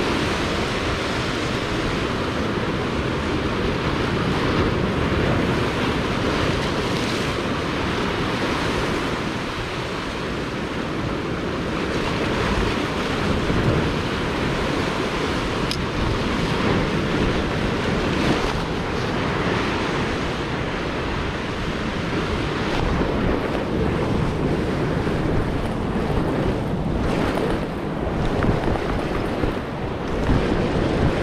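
Sea surf washing and breaking against shoreline rocks, a steady rush of water.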